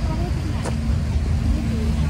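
Steady low rumble with faint voices of people in the distance, and a single short click under a second in.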